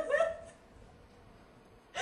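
A person's short, high-pitched giggle in the first half-second, falling in pitch and trailing off into quiet.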